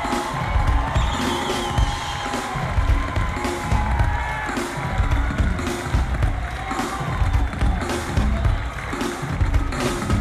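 Music with a heavy, steady beat.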